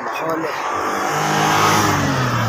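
A motor vehicle passing close by: its engine and road noise grow louder, and its engine note drops in pitch as it goes past.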